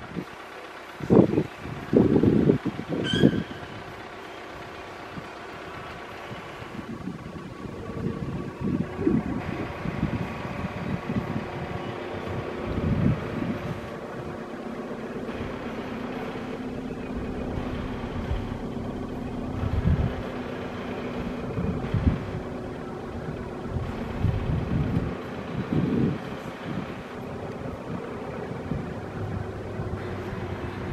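Wind buffeting the microphone in gusts, heaviest in the first few seconds and returning now and then, over a steady city traffic hum.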